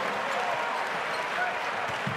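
Basketball arena crowd cheering as a steady wash of noise after a home-team basket.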